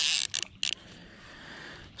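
Fly reel's click-pawl ratcheting as line is wound in. It stops about a quarter second in, and two short bursts of the same clicking follow.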